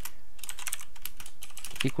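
Computer keyboard typing: a quick run of key clicks as a short line of code is entered.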